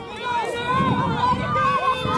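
Several high-pitched voices calling out at once, overlapping, with a low rumble about a second in.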